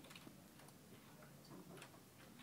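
Near silence: a faint steady hiss of library ambience, with a few soft, irregular clicks.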